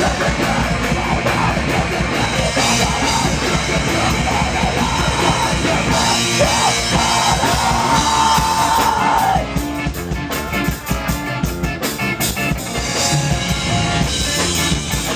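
A live ska band playing loud rock-tinged ska, with drums and vocals. A long held note comes near the middle, then the music turns choppier and a little quieter with sharp accented hits.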